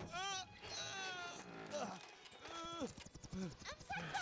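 A cartoon character's wordless vocalizations: a wavering, whinny-like laugh at the start, then sliding, falling cries.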